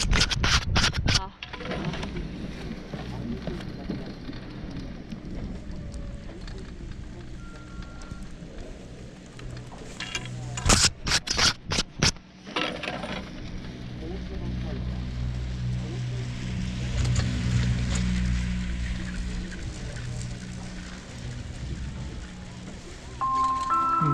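Handling noise of a helmet-mounted GoPro as its wet lens is wiped with a gloved hand: a quick run of knocks and rubs at the start and another about ten seconds in, with a steady low rumble between. A chime-like tune starts near the end.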